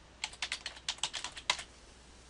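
Typing on a computer keyboard: a quick run of about a dozen keystrokes, around eight a second, ending with a louder single keystroke about one and a half seconds in.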